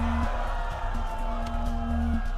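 Background music score: held steady notes over a deep bass.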